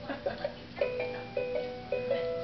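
Simple electronic lullaby melody from a baby swing's built-in music, a new note starting about every half second.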